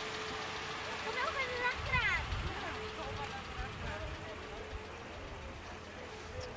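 Outdoor street ambience: indistinct voices of onlookers, briefly clearer about a second or two in, over a steady engine hum from a passing parade float's vehicle.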